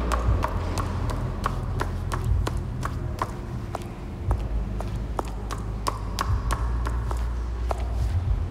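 Footsteps on stone stairs: sharp, uneven clicks about two to three a second, over a steady low hum.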